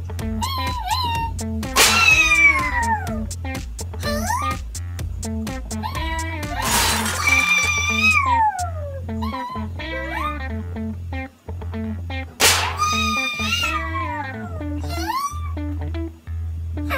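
Cartoon soundtrack music with a steady bass beat, overlaid by high, squeaky yelps and whines that glide up and down in pitch. Three short noisy crash-like sound effects come about two seconds in, around the middle (the longest, over a second), and about three-quarters of the way through.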